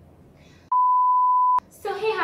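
A single electronic beep: one steady high tone just under a second long, starting about two-thirds of a second in and cutting off with a click. A woman's voice starts just after it.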